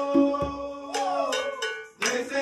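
Latin hand-percussion ensemble of congas, timbales and cowbell playing, with sharp strikes about twice a second under held sung notes. After about a second the notes slide downward and the music dies away to a brief silence near the end, as at a break in the song.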